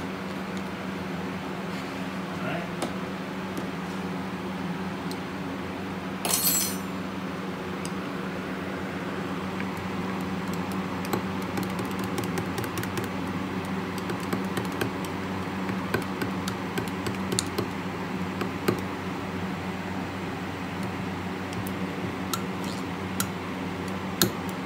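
A metal stirrer clinking and scraping in a glass measuring cup as glitter is mixed into hot liquid soft plastic (plastisol), over a steady low hum. There is one short noisy burst about six seconds in.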